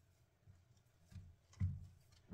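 Faint, soft low thuds of hands kneading and pressing dough in a glass bowl, three or so in two seconds.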